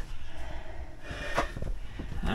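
Handling noise as a man braces his hands on a tabletop, with light bumps and one short sharp sound, like a breath, about one and a half seconds in.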